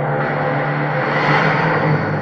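A car engine revving in a promotional film's soundtrack, played over hall loudspeakers above a steady low drone. The rushing engine sound swells in just after the start and is loudest a little past the middle.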